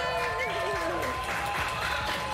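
A drawn-out cheering 'yay!' held on one note, with clapping from a small studio audience joining in about half a second in.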